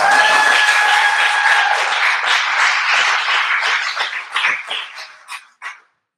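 Audience applauding and cheering, with one held cheer in the first couple of seconds. The clapping thins to a few last claps about five seconds in, then stops.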